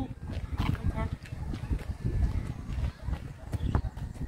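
Faint distant voices of players and a few scattered knocks from a pickup basketball game on a concrete court, over a low rumble.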